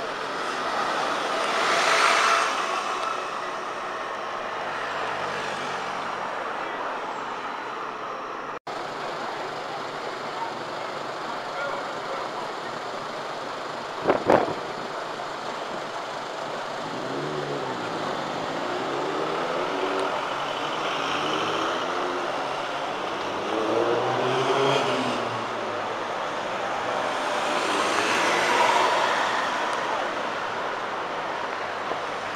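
Central London street traffic: a London double-decker bus pulls past close by about two seconds in, a sharp knock comes about halfway, and a bus's diesel engine rises and falls in pitch through several gear changes. A large van passes close near the end.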